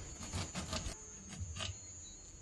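Kitchen knife cutting through a lime, its peel and flesh giving faint short clicks and rasps through the first second and once more past halfway.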